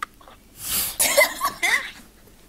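Young women laughing behind their hands, muffled and breathy, in three quick bursts that start about half a second in.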